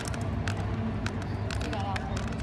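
Outdoor ambience picked up by a handheld phone: a steady low wind rumble on the microphone with scattered sharp clicks, and faint voices near the end.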